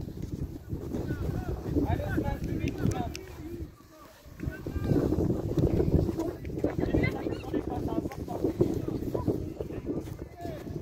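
Indistinct children's voices and calls, with light repeated thuds of footballs being dribbled and kicked on artificial turf.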